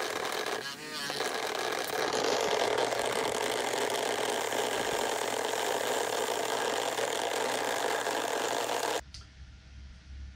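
Used blasting media poured through a home-made screening box into stacked plastic buckets to sift it for reuse: a continuous gritty hiss and patter that grows louder from about two seconds in. It cuts off abruptly near the end.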